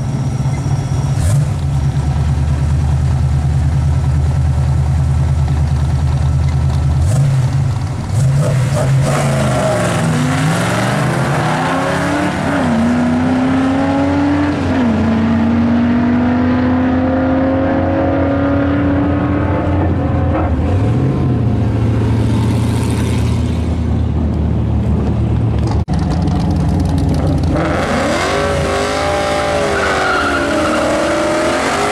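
Drag-strip launch: a black pickup truck's V8 and another car idle loudly at the starting line, then leave at full throttle about eight seconds in, the engine pitch climbing and dropping at each gear change as they run away down the track. Near the end the next car, a black Mustang, revs and begins spinning its rear tyres in a burnout.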